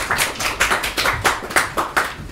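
Audience clapping, with separate hand claps heard distinctly.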